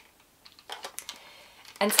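Diana toy plastic camera handled in the hands: a quick run of small plastic clicks and rubbing over about a second and a half.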